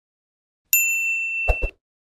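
A notification-bell 'ding' sound effect: one sharp, high ringing tone that starts about two-thirds of a second in and rings steadily for about a second, ended by two quick low thumps.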